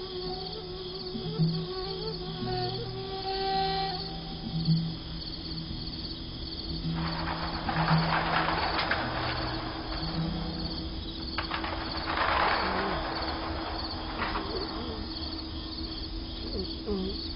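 Crickets chirping steadily under a soft film score of low held notes. A rushing noise swells up twice in the middle.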